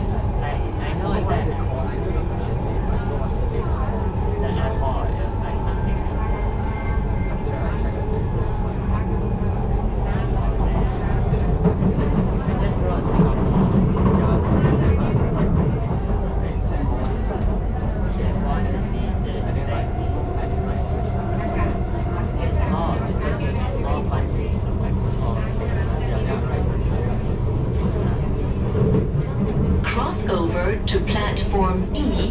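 Singapore MRT train running between stations, heard from inside the car: a steady rumble of wheels and running gear on the track. Low passenger voices are mixed in.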